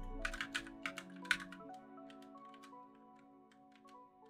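Typing on a split computer keyboard: a quick run of keystrokes that thins to a few scattered taps, over quiet background music with held notes.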